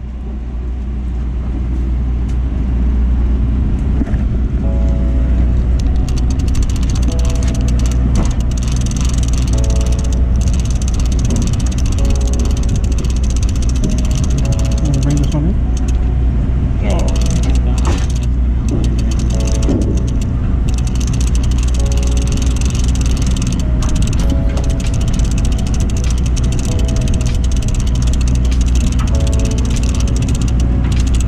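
Steady low rumble on the deck of a party boat at sea, fading up over the first couple of seconds, with indistinct voices in the background.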